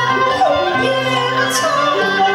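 A woman singing a Cantonese opera aria, her voice sliding between notes, over a bowed-string ensemble accompaniment.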